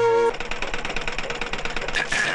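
A held note of background music cuts off about a third of a second in. It gives way to the fast, even clatter of a sewing machine stitching.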